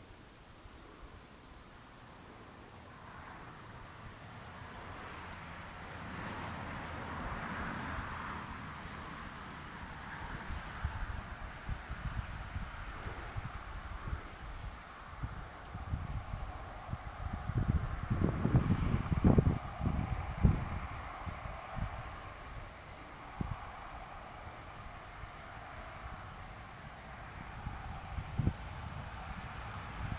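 Wind buffeting the microphone in an open field, with irregular low rumbling gusts that are loudest past the middle, over a faint steady hiss.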